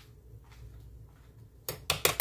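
Kitchen dishes and utensils clattering, a quick run of sharp clinks near the end, over a faint low hum.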